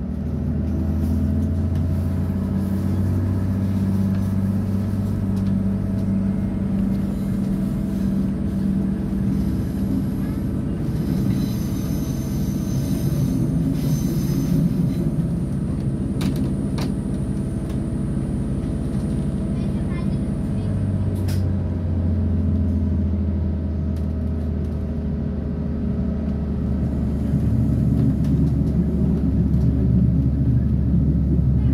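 Inside an ÖBB class 5047 diesel railcar on the move: the diesel engine hums steadily over the rumble of the wheels on the track. The engine's low hum fades for a stretch in the middle and comes back strongly about two-thirds of the way through, getting louder towards the end.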